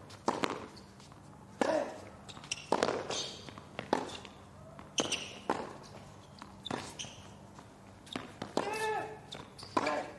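Tennis rally on a hard court: racquet strings hitting the ball back and forth about once a second, with ball bounces and sneaker squeaks between shots. A player grunts or cries out on a shot near the end.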